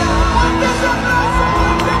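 A man singing live into a microphone with a band playing behind him.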